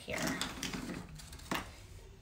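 Light handling sounds as a paper plate is moved and set down on a wooden floor, with one soft tap about one and a half seconds in.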